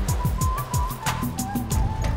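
Jingle music for a TV news segment: a high, whistle-like melody over a quick, even beat of about four ticks a second, with repeated falling low swoops.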